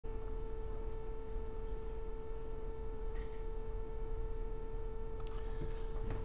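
A steady, unwavering electronic tone at one pitch, with faint overtones above it, over a low background hum.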